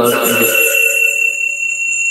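A steady electronic tone of several pitches at once, like an alarm or chime, held without change, with voices overlapping it at the start.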